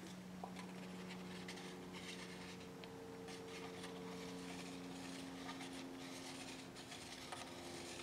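Soft handling of plastic paint cups while acrylic paint is layered into a cup: light rubbing with a few small taps, over a faint steady hum.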